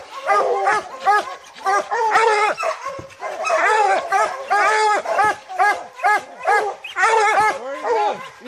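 Several bear hounds barking treed, a fast run of short, overlapping barks: the sign that the dogs have the bear up the tree.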